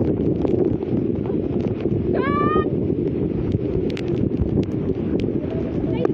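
Floodwater sloshing and splashing around people wading in it, a dense low churning with many small splashes and knocks. A brief high-pitched cry rises and breaks off about two seconds in.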